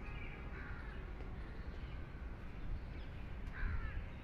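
Birds calling outdoors: a few short harsh calls near the start and another near the end, over a low steady background rumble.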